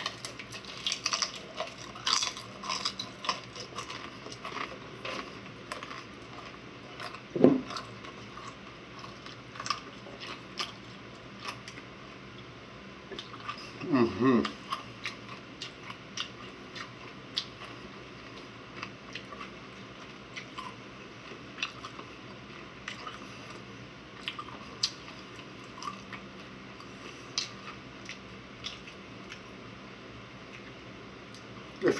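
A person chewing and crunching fried wontons close to the microphone, with many small mouth clicks that thin out later. Two louder, lower mouth sounds stand out, about seven and fourteen seconds in.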